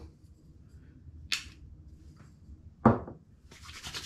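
A beard-oil bottle's pump giving one short, hissy squirt about a second in, then a brief, sharper, louder sound near three seconds. Near the end, palms start rubbing the oil between them with a steady rubbing noise.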